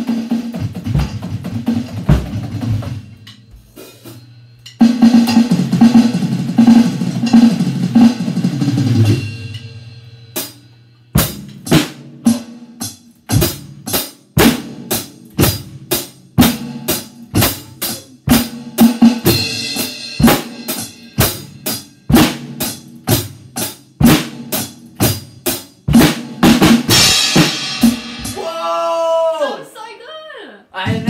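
Drum kit being played: bass drum, snare and cymbals. It starts with busy, loud passages, settles from about a third of the way in into a steady beat of evenly spaced hits, and has a cymbal crash near the end.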